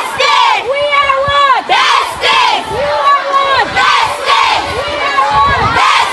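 A group of schoolchildren chanting loudly in unison at a protest, many high voices shouting short phrases over and over in a steady rhythm.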